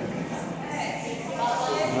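Indistinct, low-level speech and room chatter, with a voice growing clearer near the end.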